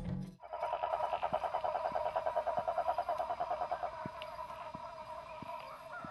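Night chorus of frogs calling in rapid, continuous pulses, with faint regular footfalls on a dirt path about one and a half a second. The tail of a music track cuts off just as the chorus begins.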